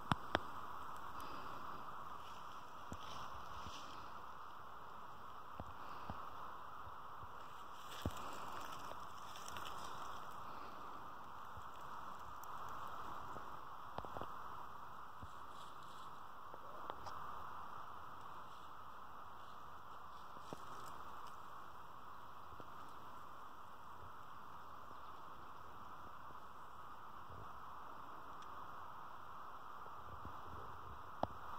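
Faint, steady rush of flowing stream water, with a few light clicks scattered through it.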